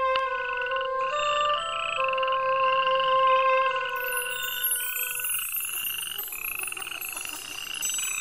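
Frog croaking sound effect: a series of rising croaks, about one a second, over background music with long held notes. From about halfway, faint high twinkling joins in.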